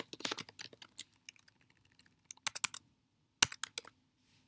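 Typing on a computer keyboard: irregular keystrokes, a quick run at the start, then sparse taps and two short clusters of keys in the second half.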